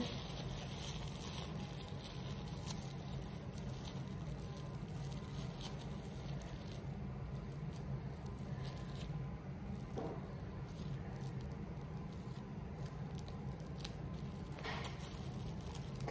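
Faint crinkling and rubbing of plastic wrap as it is twisted closed around a small pouch of milk, over a steady low room hum.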